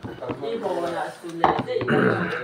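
Talking at a table during a meal, with a sharp clink of crockery about one and a half seconds in.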